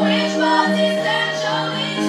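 Live musical-theatre number: women singing over band accompaniment, with one long held note.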